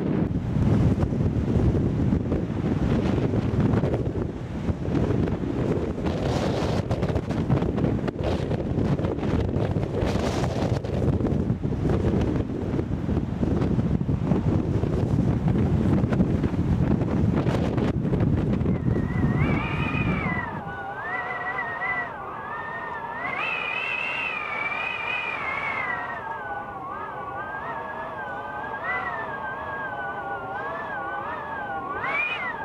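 Strong wind buffeting the microphone for about twenty seconds, then cutting off suddenly. Shortly before it stops, a long, high sound begins that wavers up and down in pitch without a break and runs on to the end.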